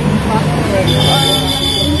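A woman talking, with street traffic behind her; about a second in, a steady high-pitched whine comes in and holds.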